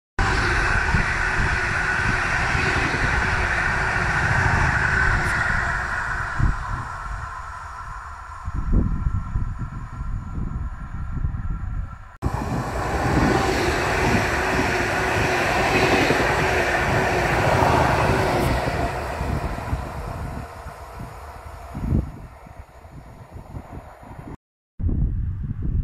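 Stadler Flirt electric multiple unit passing at speed: wheels on rail and a running hum, with wind buffeting the microphone. The sound cuts off abruptly about halfway, starts again loud, then fades toward the end.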